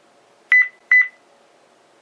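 Motorola Focus66 Wi-Fi camera beeping twice: two short electronic beeps at the same pitch, the second less than half a second after the first. The double beep signals that the camera has powered up and is ready for setup, its LED starting to flash red.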